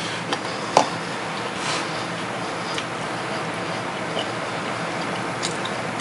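Someone chewing a mouthful of granola with milk: a few soft clicks and crunches, one sharper just under a second in, over a steady hiss.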